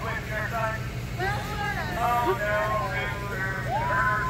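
Excited, high-pitched voices of women and girls talking and calling out over each other, with a long rising, held, then falling 'whoo' near the end, over a steady low rumble.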